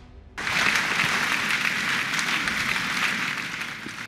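Audience applauding: steady clapping that starts about half a second in and tails off toward the end.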